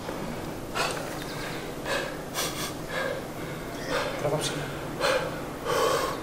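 A weightlifter taking a series of short, forceful breaths, roughly one a second, while setting up for a near-maximal clean and jerk.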